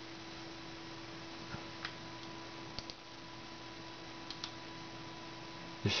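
Steady low hum of a running Pentium 4 desktop computer, with a faint higher tone over it, and a few light mouse clicks scattered through.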